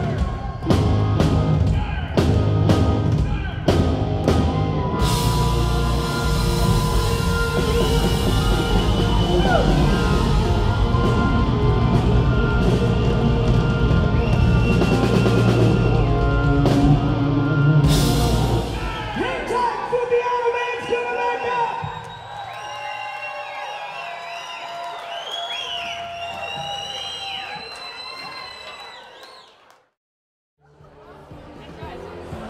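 Rock band playing live with drums and electric guitar, ending on a final crash about 18 seconds in. The audience then cheers and whistles, fading out near the end.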